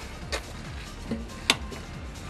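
Background music with a steady beat, and one sharp click about three-quarters of the way through as a power cable plug is pushed into the socket on the hoist motor.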